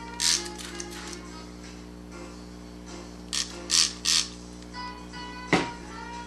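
Hand spray bottle squirting water onto a wet watercolour painting in short hissing bursts: one near the start, then three in quick succession about three to four seconds in, to break up clumps of unmixed paint. A sharp knock follows about five and a half seconds in.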